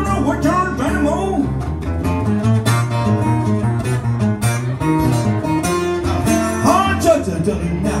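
Acoustic guitar played live, the instrumental opening of a song, with picked notes over a steady rhythm of chords and a few notes that bend up and back down.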